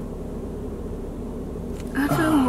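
Steady low hum of a car's cabin, even in level throughout.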